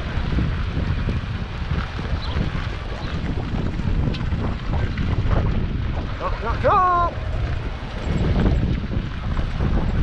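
Wind rumbling on the microphone of a camera riding on an open golf cart, a steady low noise throughout. A brief pitched call with falling tails comes about two-thirds of the way through.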